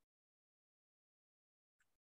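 Near silence: the sound is cut to dead quiet, with one very faint, short snippet near the end.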